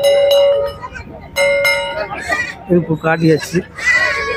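Goat kids bleating: two steady, high calls in the first two seconds, then shorter wavering ones.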